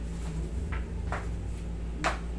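A steady low hum, typical of a wall-mounted air conditioner running, with two short, light knocks a little under half a second apart near the middle.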